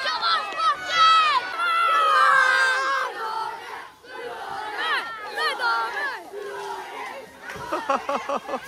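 A group of young boys shouting and chanting at close range, several high voices yelling over one another, with a long sustained shout about two seconds in and a brief lull about halfway.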